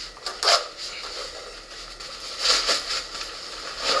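Fabric of a Kelty Redwing 50 backpack and a first-aid pouch rustling and scraping as they are handled, in a short burst about half a second in and a longer one around two and a half seconds in, as the pouch is slid back onto the pack.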